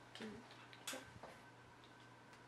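A few soft clicks and taps of small plastic art supplies being handled, the sharpest about a second in, over a faint steady electrical hum.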